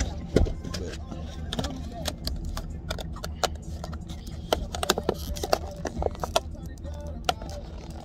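Faint background voices over a steady low rumble, with many sharp clicks and taps.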